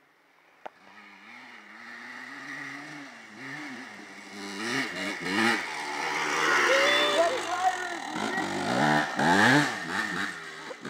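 Dirt bike engine revving up and down as the bike rides over a run of whoops. It grows louder as it comes closer and is loudest around the middle and again near the end.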